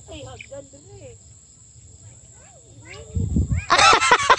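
Steady high-pitched drone of crickets or similar insects in vegetation, with faint wavering voices. Near the end a low rumble comes, then a loud, rapidly repeating pulsed call begins at about five pulses a second.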